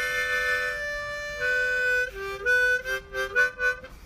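Harmonica playing a slow melody. It opens on a long held chord, then moves through a run of shorter notes that change pitch in the second half.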